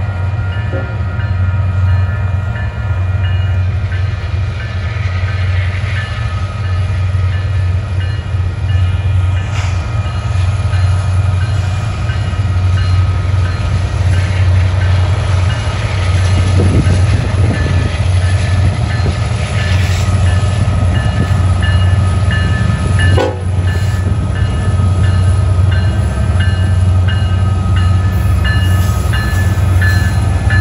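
Union Pacific diesel freight locomotives running past, a heavy steady engine rumble, with a bell ringing in an even repeating pattern that grows plainer as the lead unit nears.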